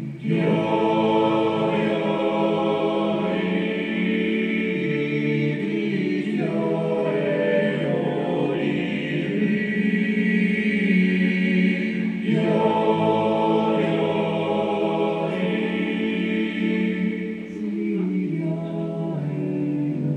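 Men's voices singing in close harmony, several parts at once, in long sustained phrases with short breaks between them.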